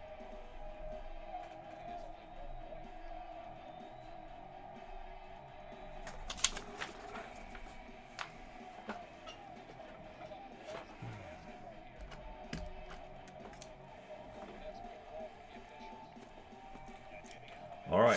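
Faint background music with indistinct voices running underneath, broken by a few sharp clicks; the loudest click comes about six seconds in.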